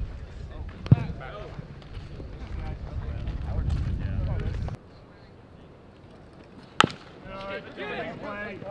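A pitched baseball pops into the catcher's mitt about a second in, over wind rumble on the microphone. Later a bat cracks sharply against the ball, and players' voices call out right after.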